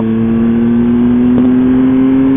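Motorcycle engine pulling steadily under acceleration, its note rising slowly as the bike gathers speed.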